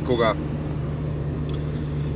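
Honda Civic's swapped-in Honda K-series four-cylinder engine and road noise heard from inside the cabin while cruising: a steady drone at an unchanging pitch.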